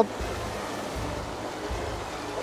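Steady rushing of a shallow, fast river running over rocks, with a low rumble underneath.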